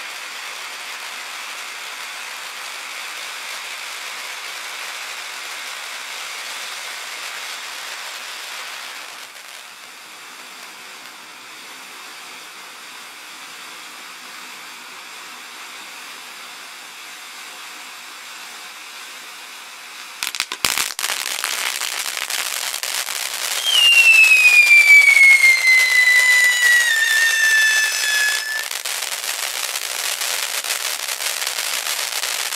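Firework fountain hissing steadily as it sprays sparks. About two-thirds in a sharp pop sets off crackling, and over it a loud whistle falls slowly in pitch for about five seconds before cutting off, with the crackle going on.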